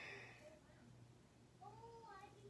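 A cat meowing faintly once, a single rising-then-falling call that starts near the end, over a steady low hum in an otherwise near-silent room.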